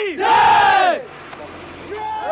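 A group of soldiers shouting a war cry together: one loud shout lasting under a second that rises and falls in pitch, followed by a quieter second.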